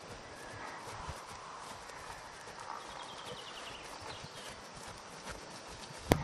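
Faint hoofbeats of a horse moving over grass turf, with a few soft knocks.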